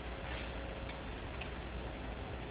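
Steady room hum with a few faint, short ticks about half a second apart.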